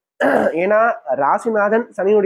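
Speech only: a narrator talking in Tamil, with a breathy onset as the voice resumes.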